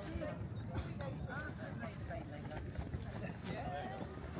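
Passersby talking as they walk past on a paved path, with the sound of their footsteps.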